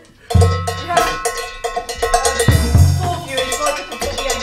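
Band music starts abruptly about a third of a second in: drums and percussion playing a quick clicking rhythm over sustained tones and a low bass line.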